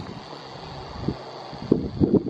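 Wind buffeting the microphone, a steady low rumble, with a couple of faint low thumps in the second half.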